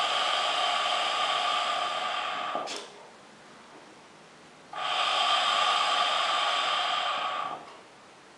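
Air drawn hard through a hookah: two long, steady airy rushes of about three to four seconds each, the first ending a little under three seconds in and the second starting near five seconds in, with a quiet pause between.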